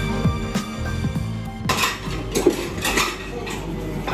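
Background music with a steady beat, giving way less than halfway through to restaurant clatter: dishes and cutlery clinking several times in a small sushi restaurant.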